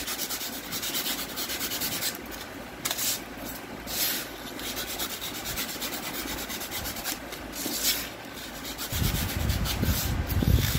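A thin hand-held blade scraping and cutting through a thermocol (polystyrene foam) sheet in repeated short strokes, a scratchy rasping with a few louder strokes. A low rumble joins near the end.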